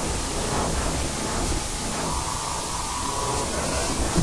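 A steady wash of noise with a low rumble beneath it, as in an experimental noise track; a faint held tone enters about halfway through.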